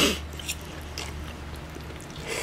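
People eating spaghetti: faint chewing with a few light clicks of forks on plates, over a low steady hum.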